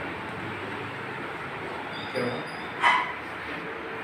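A dog barks twice over steady background noise: a short yip about two seconds in, then a sharper, louder bark near three seconds.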